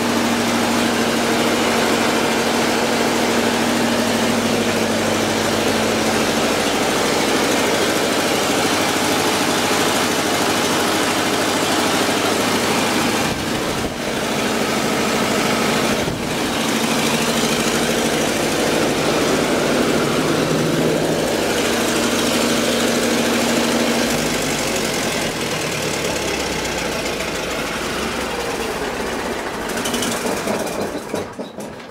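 Kamper diesel engine of a vintage 60 kVA generator set running steadily and a little rough. Its note changes and its level drops slightly about 24 seconds in.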